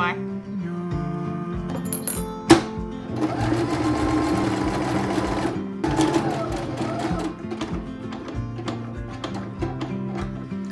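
Domestic sewing machine stitching fabric in two runs, a longer one of about two and a half seconds and then a short one, with a sharp click just before the first run. Background music with guitar plays throughout.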